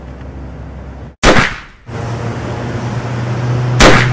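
Two loud gunshots about two and a half seconds apart: the first about a second in, with a short fading tail, and a sharper one near the end, over a steady low hum.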